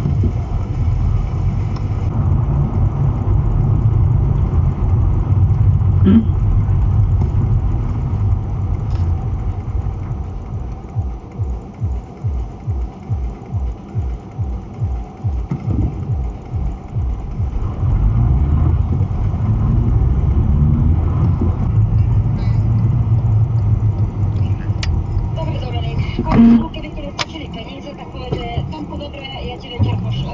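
Low, steady engine and road rumble inside a moving car's cabin. The rumble eases as the car slows to a stop, with a stretch of even low pulsing in the middle.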